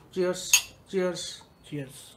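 Whisky tumblers clinking once, about half a second in, a short bright glassy ring, amid brief sounds from a man's voice.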